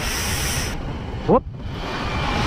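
Wind rushing over the microphone with low road and engine rumble while riding a scooter, opening with a brief, sharp hiss.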